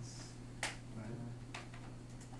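Interactive whiteboard pen tapping against the board as a number is written: two sharp clicks about a second apart, over a steady low hum.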